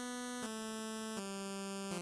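ReaSynth software synthesizer playing a narrow-pulse-width square wave, a thin tone. It plays a run of four held single notes, each a step lower than the last, changing roughly every three-quarters of a second.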